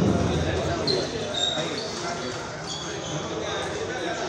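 Table tennis ball clicking back and forth between paddles and table in a rally, echoing in a large hall, with voices around.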